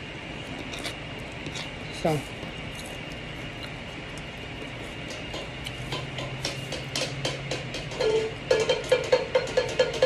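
Faint close-up mouth clicks and chewing from someone eating a raw garlic clove, over a steady faint high tone. A repeating musical pattern comes in and grows louder over the last two seconds.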